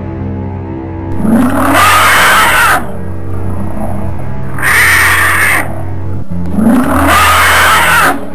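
A monster's roar sound effect, heard three times, each loud and lasting a second or so, over a steady, droning horror-film music score.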